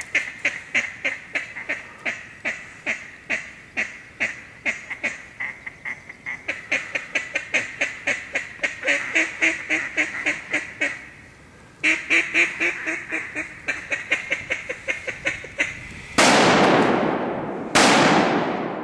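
Duck quacking in a fast, steady run of about four or five quacks a second, pausing briefly partway through, typical of a duck call being worked at ducks overhead. Near the end, two shotgun shots about two seconds apart, each with a long echo dying away through the timber.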